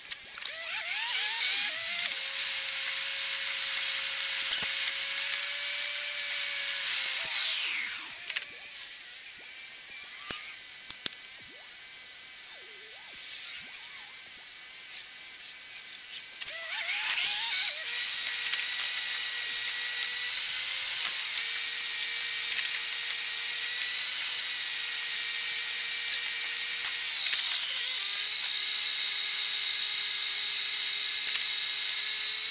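High-pitched whine from the moving car, heard in the cabin, that rises in pitch as the car pulls away, holds steady while it cruises, and falls away as it slows. It does this twice, the second time holding on to the end, with small clicks and rattles scattered through.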